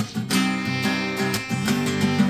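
Acoustic guitar strummed in a song's instrumental lead-in, with a clarinet holding long notes over it.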